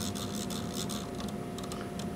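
Quick, light ticking from the navigation knob of an Agilent E5062A network analyzer as it is spun by hand, dense at first and then sparser, over the instrument's steady hum.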